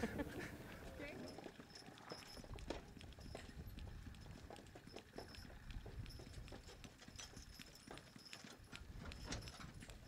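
Faint, irregular hoofbeats and knocks from a team of two Percheron–Belgian cross draft horses walking as they pull a wooden farm wagon over a harvested corn field.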